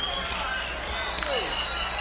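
Indistinct voices of people talking in the background: a few short falling utterances over a low steady hum.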